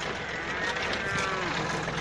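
Yanmar 1145 tractor's diesel engine running steadily, with a faint drawn-out call over it in the middle.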